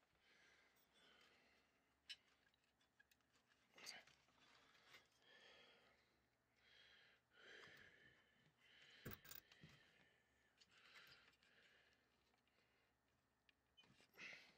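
Near silence: faint breathing while a heavy amplifier power transformer is handled inside its steel chassis, with a few light clicks and knocks, the sharpest about nine seconds in.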